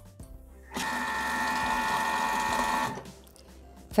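Bimby (Thermomix) TM6 motor running at speed 3.5 with the butterfly whisk, whipping chilled cream into whipped cream: a steady whine that starts about a second in and stops shortly before the end.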